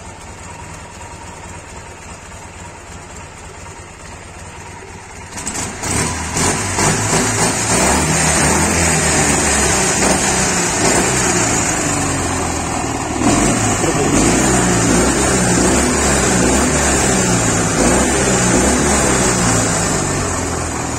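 IMZ Ural motorcycle's air-cooled flat-twin engine starting about five seconds in, then running steadily with an even beat.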